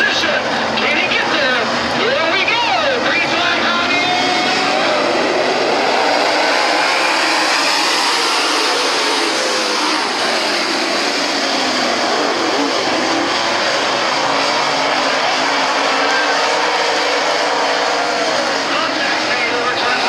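A field of dirt late model race cars racing, their V8 engines running hard throughout, with pitch rising and falling as the cars accelerate and pass.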